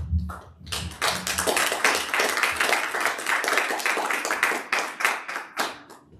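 Small congregation applauding, starting about a second in and thinning out to a few last claps near the end. A low rumble sounds in the first second or so.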